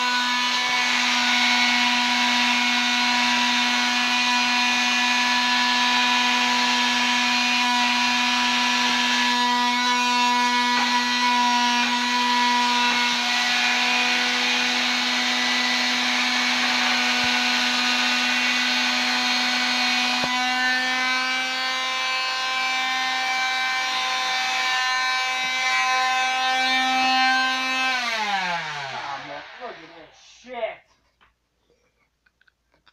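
Handheld electric grinder running at a steady high whine, then switched off about two seconds before the end and winding down, its pitch falling away to nothing.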